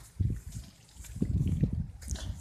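Low, muffled rumbling on the handheld phone's microphone, in a short burst just after the start and a longer stretch from just past a second in.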